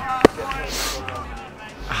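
A single sharp slap about a quarter of a second in, followed by a short breathy exhale and faint voices.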